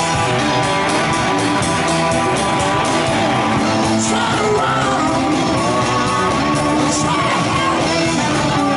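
A live rock band playing: drum kit, electric guitar and keyboard, loud and continuous.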